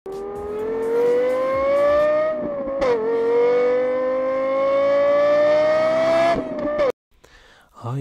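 Car engine accelerating hard, its pitch climbing steadily, dropping once at a gear change about three seconds in and climbing again before cutting off suddenly near the end.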